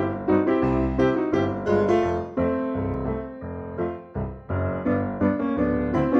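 Piano music: a run of struck notes and chords, with a new attack about three times a second and a brief dip about four seconds in.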